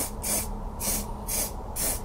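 Aerosol can of Vallejo surface primer spraying in short hissing bursts, about two a second, five in all. The can is running low on primer.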